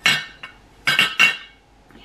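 Ceramic clinks from a Blue Sky Clayworks gingerbread-house teapot being turned in the hands, its lid knocking against the pot: a sharp ringing clink at the start, a faint click, then two more clinks close together about a second in.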